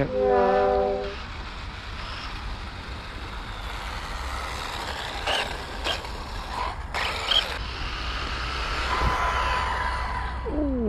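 Electric RC buggy with a brushless motor running over tarmac: a steady hiss of tyres and drivetrain, with a few short sharp knocks in the middle. It opens with the held end of a short comic musical sound effect.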